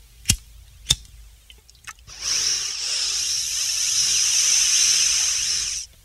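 Sound effect in a hip-hop track's intro: a few sharp clicks, then about four seconds of a steady, high-pitched whirring, like a power drill, that cuts off suddenly.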